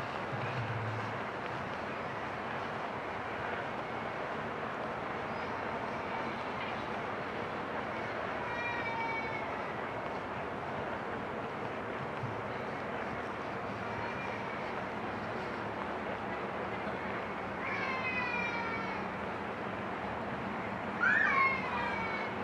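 Steady outdoor background noise with three animal calls, each falling in pitch: a faint one about nine seconds in, another around eighteen seconds, and a louder, shorter one near the end.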